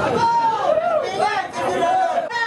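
Speech: a man's voice through a handheld megaphone, with crowd chatter around it.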